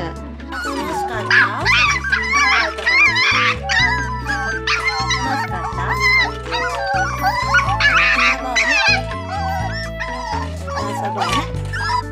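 Young toy poodle puppies whining and yipping in many short, high, wavering cries, over background music.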